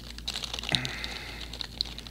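Plastic wrapper of a stroopwafel crinkling and crackling as it is pulled open and handled: a rapid, uneven run of small sharp crackles.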